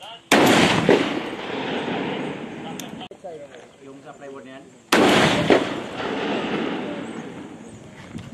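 Two shots from a Barrett .50-calibre rifle with a muzzle brake, about four and a half seconds apart. Each is a loud report followed by a long rolling echo that dies away over two to three seconds.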